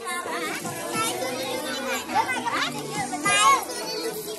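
A group of children talking and calling out all at once, with a louder high-pitched shout about three and a half seconds in.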